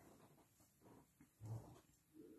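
Near silence: room tone with faint scattered sounds and one brief, soft low sound about one and a half seconds in.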